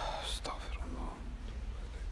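Brief whispering close to the microphone in the first half second, with a faint murmur after it, over a quiet low hum.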